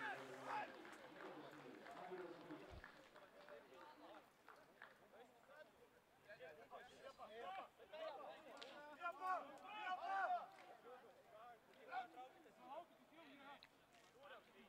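Faint shouts and calls of rugby players on the pitch as the forwards pack down for a scrum.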